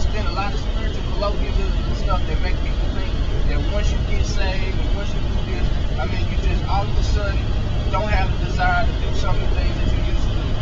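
Steady low road and engine rumble inside a moving car's cabin, under a man's speech.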